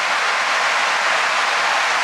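Steady rushing hiss of water in and around a plastic koi show tub, with the water stirred as hands grip the koi and lift it.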